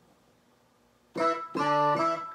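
Keyboard patch layering a clavinet with octave-tuned soprano sax samples, made to imitate a Lyricon, played on a keyboard controller: after about a second of near silence, a short note and then a held note with a steady, bright tone.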